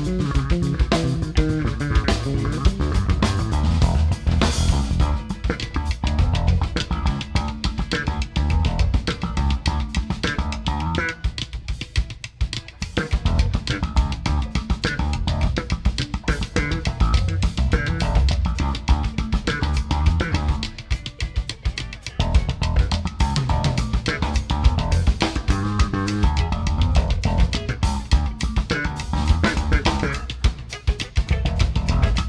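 Electric bass solo with a drum kit playing a funk groove behind it. The bass and drums thin out briefly twice, about a third of the way in and again around two-thirds through.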